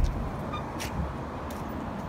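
Steady outdoor traffic and parking-lot background noise, with two light clicks, one just under a second in and another about half a second later.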